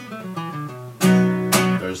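Acoustic guitar: a few quick single notes close a scale run in an A-shaped B chord position, then a chord is struck about a second in and again half a second later, left ringing.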